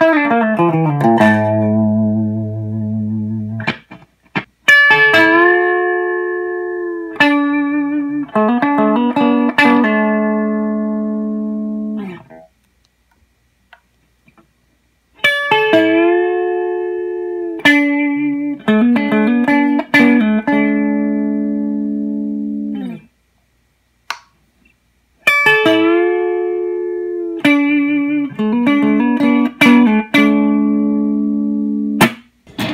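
Electric guitar with Dragonfire Hexbucker pickups, played as a pickup demo. A fast falling solo run on the bridge pickup ends on a held low note. After a short break comes a twangy lick with string bends on the middle pickup, played three times with short pauses between.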